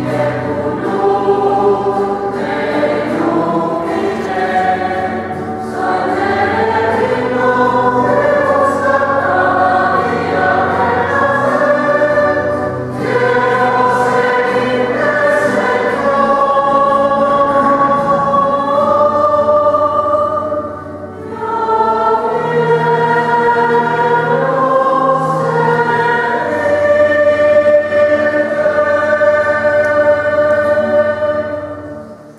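A choir singing a slow hymn in held, stepping notes over low sustained bass notes, with a brief break between phrases a little after two-thirds of the way through.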